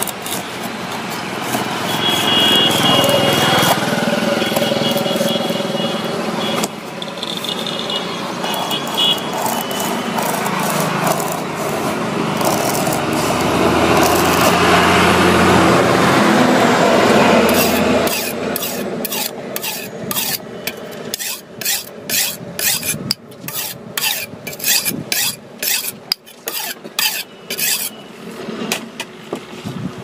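Over the first half a passing motor vehicle's rumble swells and then fades. From about two-thirds of the way in come quick, even rasping strokes of a hacksaw blade worked back and forth against old tyre rubber, about two a second.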